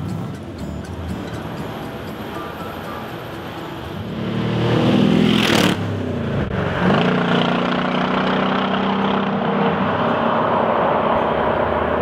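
1965 Chevrolet Corvette Stingray's side-piped V8 accelerating: about four seconds in it revs up loudly and rises in pitch, then breaks off sharply just before six seconds. It then pulls again from a lower pitch and keeps running strongly to the end.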